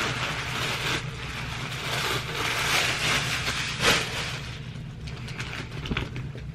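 Clear plastic packaging bag rustling and crinkling while a pair of stretch-denim jeggings is pulled out and shaken open, with one short sharp click about two-thirds of the way through.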